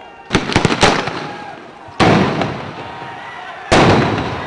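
Tear gas shells going off: a rapid cluster of sharp bangs in the first second, then two single heavier blasts, about two seconds in and near the end, each trailing off in an echo.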